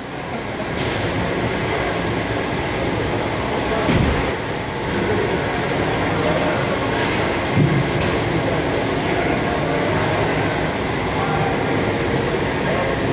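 Steady din of a busy weight room, with a couple of soft thuds of weight equipment, one about four seconds in and one near eight seconds.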